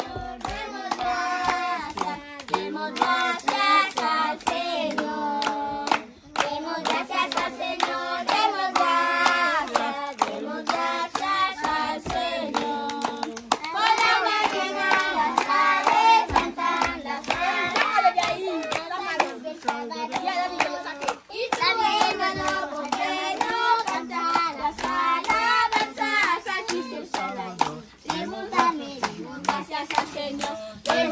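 A group of children and adults singing a song together while clapping their hands in time.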